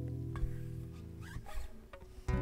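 A held chord from the guitars and accordion rings out and fades away over the first second and a half, leaving a few faint squeaks and clicks of fingers moving on nylon guitar strings.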